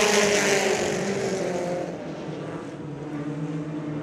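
A pack of Pro 4 stock cars racing past at full throttle on the start. Their engines are loudest at first, then the note drops a little and fades as the field pulls away, about two seconds in.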